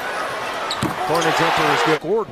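Basketball arena crowd noise that swells into a louder cheer in the second half, over the sounds of play on the court. A voice sounds over it near the end.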